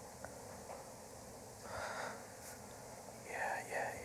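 Soft whispered speech, as in murmured prayer: a brief quiet utterance about two seconds in and a few short syllables near the end, over faint room tone.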